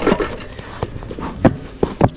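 Bellows smoker being pumped by hand, giving a few short, sharp puffs over a few seconds, with wind noise on the microphone.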